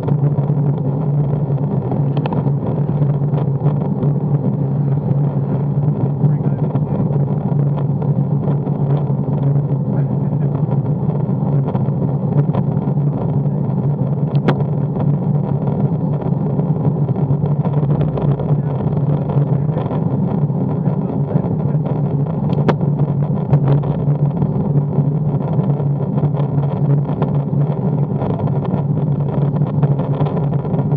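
Steady low drone of tyre and air noise from a bicycle-mounted action camera as a road bike rides on wet tarmac, with a few faint clicks.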